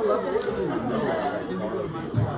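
Several people talking at once in small groups: overlapping conversational chatter.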